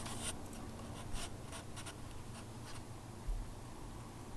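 Quiet scratching and rubbing: several short scrapes in the first three seconds, then a dull bump a little after three seconds in.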